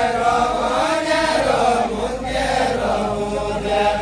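A group of men singing a deuda folk song in chorus, the voices holding long drawn-out notes that slide slowly in pitch.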